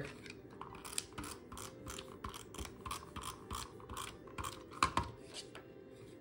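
Creative Memories tape runner drawn across cardstock in a series of short scratchy strokes, laying adhesive, with paper handled and shuffled toward the end.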